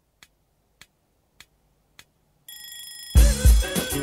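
Intro of a late-1980s hip-hop track: sharp ticks about every 0.6 s, a high steady electronic tone entering past halfway, then the full beat with a heavy kick drum and bass coming in loud about three seconds in.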